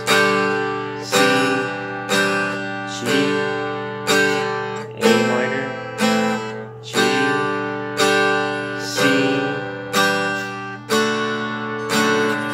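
Acoustic guitar strummed in the key of G, with one chord strum about every second, each left to ring and fade before the next.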